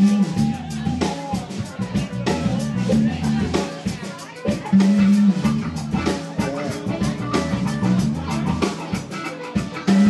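Live bar band playing: electric bass, electric guitar and drum kit, with repeated bass notes under regular drum hits.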